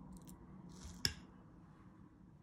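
A metal spoon rustles briefly as it spreads chicken filling on a samosa pastry sheet, then clicks once, sharply, against the ceramic plate about a second in.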